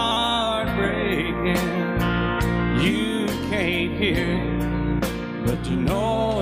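Country music recording: the band plays guitars over bass with a steady drum beat, in a short gap between sung lines.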